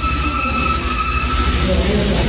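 A running machine: a steady high-pitched whine over a hiss and a low rumble, the whine dropping away near the end.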